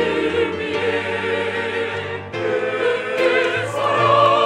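Mixed church choir of men's and women's voices singing a Korean anthem with piano accompaniment. The voices sing with vibrato, with a short breath between phrases a little past halfway.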